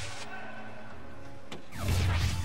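A soft-tip dart hits an electronic dartboard about one and a half seconds in, followed at once by the machine's loud, crash-like hit sound effect with a falling sweep. Steady background music plays underneath.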